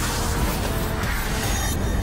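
Television news programme closing theme music: a rushing swell of noise over sustained low notes that dies away near the end, leaving held tones.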